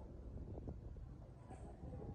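Quiet street ambience: a low wind rumble on the microphone with a few faint soft knocks.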